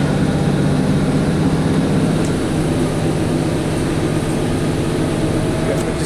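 Inside a Great Western Railway diesel multiple-unit train under way: a steady engine drone and running noise filling the carriage, its pitch stepping down a little about two and a half seconds in.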